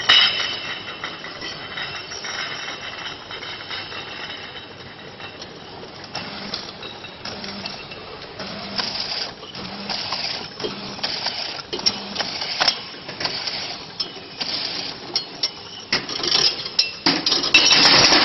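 Automatic bottle labeling machine running: a high motor whine at first, then mechanical clicking and clattering with a soft regular beat about once a second. The clatter grows busier and loudest near the end.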